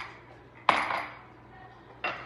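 A single sharp clink of glass kitchenware on the stone counter about two-thirds of a second in, ringing briefly, after a small tap at the start.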